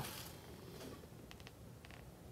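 Faint sound of a tennis ball rolling down a low cardboard ramp onto a tile floor, with a few light ticks about a second and a half in.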